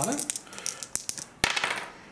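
Two Star Wars Legion attack dice being rerolled: shaken in the hand and rolled onto the gaming table, a run of small clicks and clatters with one sharper knock about one and a half seconds in.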